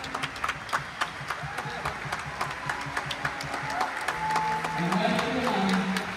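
A large group of students clapping and tapping in a steady rhythm of about four beats a second, with voices joining in held, rising calls near the end.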